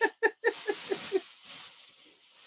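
A man laughing hard: a quick run of short breathy "ha" pulses, about six a second, that stops a little past one second in and trails off into wheezing breath.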